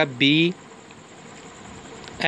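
A man says the letter "B", then a steady low hiss with a faint hum underneath.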